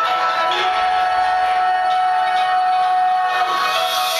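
Live metalcore band music: a held, sustained chord of steady notes with no bass or drums under it.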